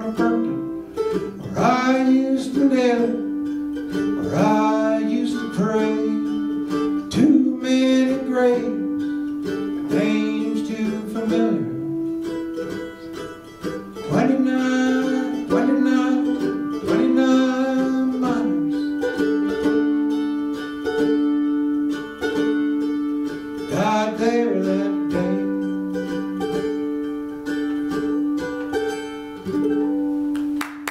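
Solo instrumental music played live on a small hand-held instrument: a melody with notes that bend in pitch, over a steady held drone note.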